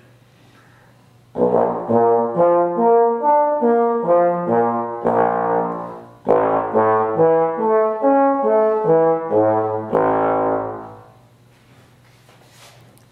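Trombone with its slide held in one position, playing the notes of its harmonic series: two runs, each stepping up through the separate notes and back down, with a short gap between them. Only certain notes sound, with nothing in between.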